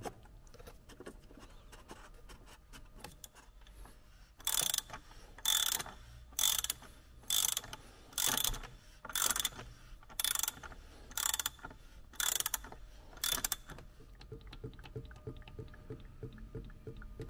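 Socket ratchet tightening a plastic oil filter housing cap: after a few seconds of faint handling clicks, about ten ratchet strokes come roughly one a second, each a short burst of rapid pawl clicks.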